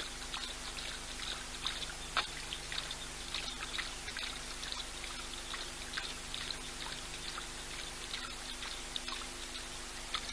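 Male lion lapping water with his tongue: a fast, uneven run of small wet laps and splashes.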